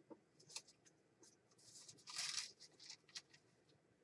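Faint rustling with a few light clicks and taps as craft supplies are handled, with one longer rustle about two seconds in.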